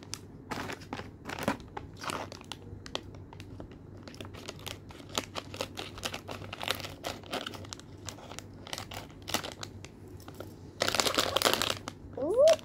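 Crinkling and crackling of a plastic blind bag being handled and pulled open by hand, in many short rustles, with a louder, denser rustle for about a second near the end.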